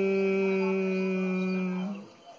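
A man's long, steady closed-mouth hum at one low pitch, the bee-like humming of Bhramari pranayama (bee breath). Near the end it fades and stops as his breath runs out.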